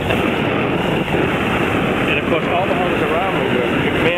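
Steady rushing wind and water noise aboard a moving boat, with people's voices talking in the background from about two seconds in.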